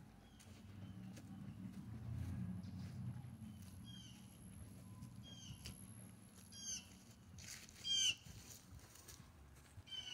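A bird calling outdoors: a short, high, downward chirp repeated about every second and a half, starting about four seconds in and loudest near the end. Under it runs a low rumble with faint clicks.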